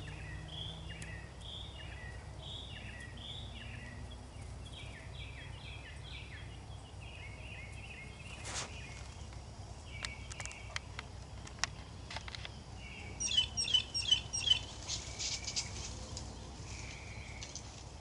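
Songbirds calling outdoors: a run of short repeated chirps for the first several seconds, then a quick burst of sharp, high notes a little past halfway, the loudest thing heard. A steady low background hum runs underneath, with a single click about halfway through.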